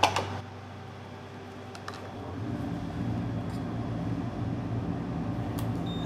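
A small electric fan at a soldering workbench comes on about two and a half seconds in and then runs steadily with a low hum.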